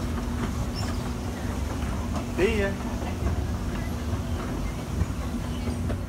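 Escalator machinery running: a steady motor hum over low rumbling from the moving steps.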